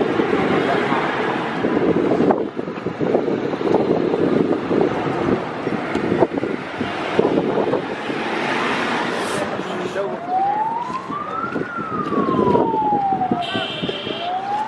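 A vehicle siren starts about ten seconds in with a slow wail, its pitch rising and then falling back before rising again. Underneath is the steady noise of a crowd on foot.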